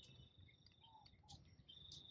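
Near silence, with a cricket's faint, steady high trill that breaks off briefly near the end. Two faint short chirps come near the middle.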